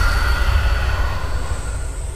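Horror-trailer sound design: a deep rumbling drone with a thin, steady high whine above it, slowly fading.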